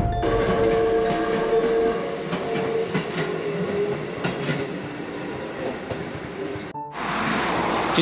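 A train passing: a steady horn tone for about the first two seconds, then dense running noise with repeated knocks, which cuts off abruptly near the end and gives way to a steady hiss.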